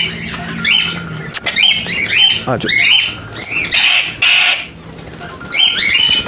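Alexandrine parakeet squawking again and again while flapping its wings on a person's hand. The calls pause briefly about four and a half seconds in, then start again near the end.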